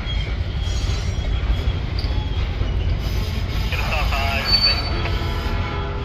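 Freight cars of a slow-moving train rolling past with a steady low rumble. Thin, high wheel squeals come and go, with a short sharp squeal about four and a half seconds in.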